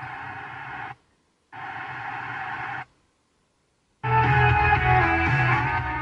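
FM radio playing through a car stereo's speakers: two short snatches of station audio, each cut off by a second of dead silence, then a station comes in with music, louder, from about four seconds in.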